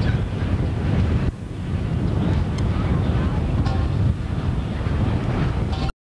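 Airport tug towing a cart, heard as a steady low rumble under heavy wind buffeting on the microphone, with no clear engine note standing out.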